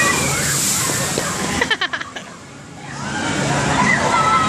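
Spray from a water ride's splashdown pouring down over the walkway in a loud, rushing wash. The wash dies away about halfway through, with a few sharp knocks as it tails off.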